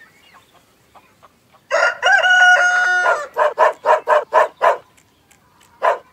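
Rooster crowing once, a long call starting a little under two seconds in, followed by a quick run of about eight short clucks.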